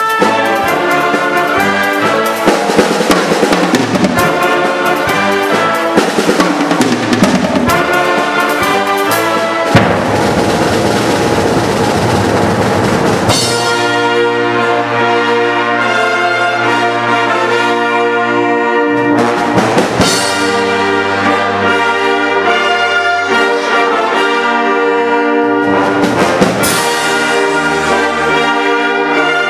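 Live concert band playing full brass and woodwind with percussion: drum and cymbal strokes through the first half, building to a loud swell that breaks off sharply about 13 seconds in. Then the brass hold sustained chords, with a couple of single percussion strikes later on.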